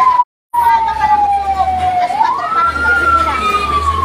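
Fire truck siren wailing: the pitch falls slowly, rises quickly about two seconds in, then starts to fall again, over a low engine rumble. The sound cuts out completely for a moment just after the start.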